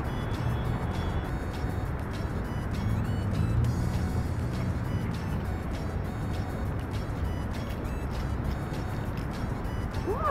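Steady low rumble of road traffic under faint background music.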